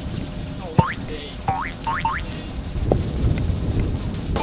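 Cartoon 'boing' sound effects, quick rising springy sweeps, timed to a basketball bouncing on grass. About four come in quick succession, closer together each time, over background music.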